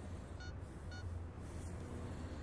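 Two short electronic beeps, about half a second apart, over a steady low hum.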